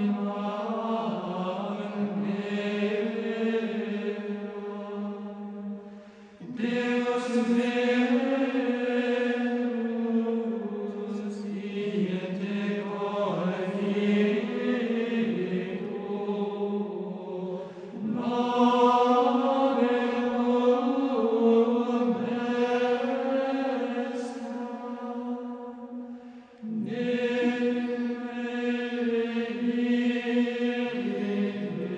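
Gregorian chant: voices singing one melodic line in unison in long, slow-moving held phrases, with a short break for breath about six seconds in and another near the end.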